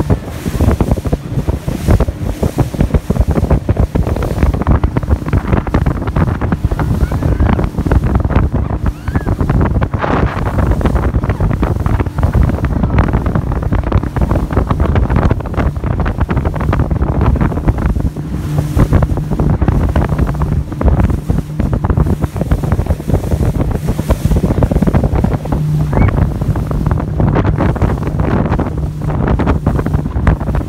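Wind buffeting the microphone of a motor boat under way at speed, over the steady hum of its engine and the rush of water along the hull.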